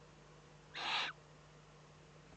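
One short hiss from a Eurasian eagle-owl chick, about a second in: the young owl's food-begging call.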